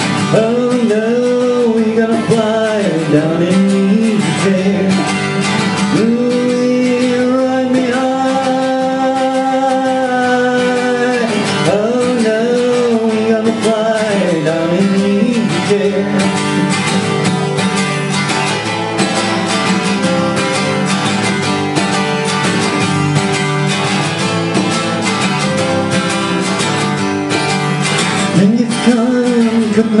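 A man singing with a strummed acoustic guitar in a live folk-country song. About halfway through the voice drops out and the guitar carries on alone, and the singing comes back in near the end.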